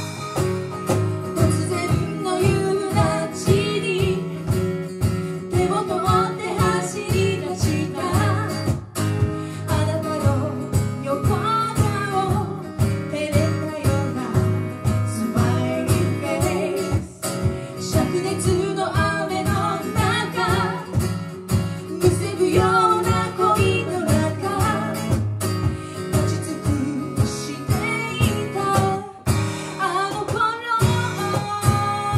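Live acoustic pop song performance: acoustic guitars strummed in a steady rhythm with a melody line carried over them.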